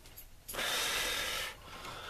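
A person's breath, one hissing exhale that starts about half a second in and stops sharply a second later.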